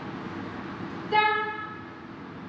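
A single short tone at one steady pitch, starting sharply about a second in and fading out over about half a second, over a steady background hiss.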